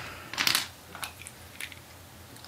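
Light handling noise as a small cleaning brush is picked up from among tools on a wooden table: a short scuff about half a second in, then a few soft clicks.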